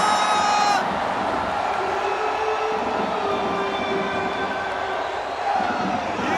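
Stadium crowd cheering a goal in a loud, steady roar. At the start a long held shout rises above it and ends about a second in.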